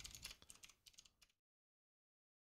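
Faint typing on a computer keyboard: a quick, irregular run of key clicks that stops a little over a second in.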